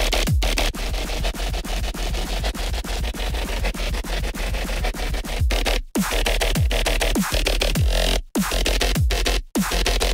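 Dubstep bass from a Serum software synthesizer playing a looped pattern: a dense, gritty mid-range over a steady deep sub, with repeated short downward pitch drops and a few brief dead stops between phrases.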